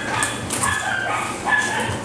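A two-month-old Belgian Malinois puppy whining, a few short high-pitched whines.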